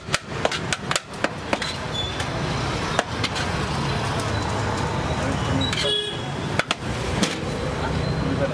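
Sharp clicks and taps, quick and close together in the first second and a half, then a few scattered ones, as rice is scooped out of a large aluminium pot into a foil takeaway container. Steady roadside traffic noise runs underneath.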